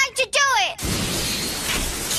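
A shouted cry falling in pitch, then about a second in a loud crash with grinding hiss: the anime sound effect of two spinning Beyblade battle tops colliding, running on after the impact.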